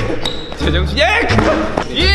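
Voices talking and laughing over background music with a heavy, steady bass line, and a couple of short thuds in the middle.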